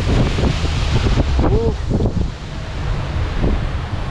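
Wind buffeting the microphone on a moving open boat, a steady heavy rumble, with water rushing past the hull. A brief faint voice sounds about one and a half seconds in.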